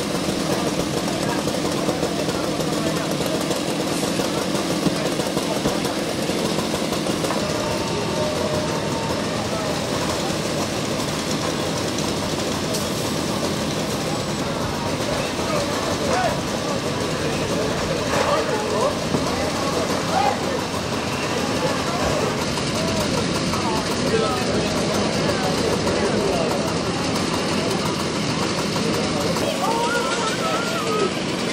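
A steady engine running throughout, with indistinct voices and calls in the background, more of them in the second half.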